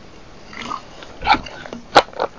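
A soft rustle, then two sharp knocks close to the microphone, about a second in and at the end: handling noise from things moved on the table.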